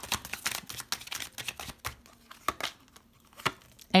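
Tarot cards being shuffled and handled by hand: a dense run of quick papery clicks and rustles for about two seconds, then a few scattered clicks as a card is drawn from the deck.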